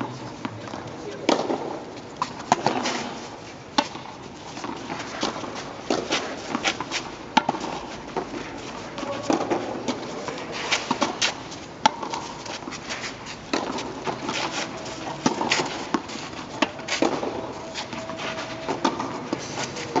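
Tennis play on a clay court: irregular sharp knocks of the ball on rackets and the court, with footsteps on the clay and voices at times.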